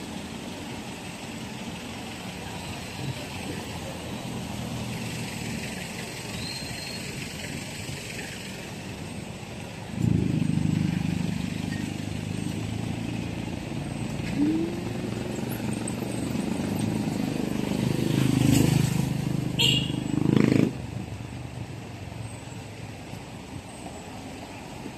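A motor vehicle engine running close by over steady street traffic noise. It starts suddenly about ten seconds in, grows louder near the end, and cuts off abruptly a few seconds before the end.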